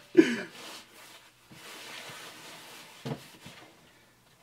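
A short laugh, then a soft gritty rustle for a second or two as homemade kinetic sand is squeezed and crumbled in the hands, with a brief thump about three seconds in.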